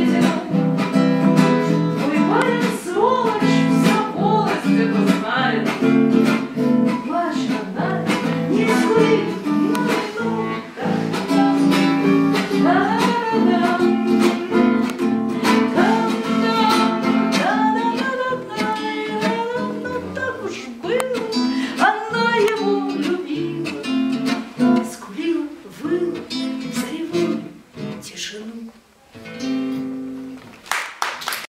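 Acoustic guitar strummed in a steady pattern, accompanying a singing voice. The playing thins out and gets quieter in the last few seconds as the song winds down.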